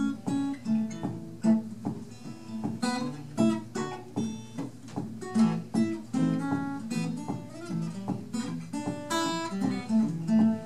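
Two steel-string acoustic guitars fingerpicking a country tune together, Travis-style, with steady bass notes under plucked melody notes; one guitar is capoed higher up the neck than the other.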